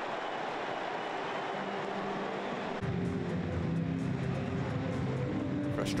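Stadium crowd noise just after a home goal, with music of long held notes coming in about three seconds in and growing slightly louder.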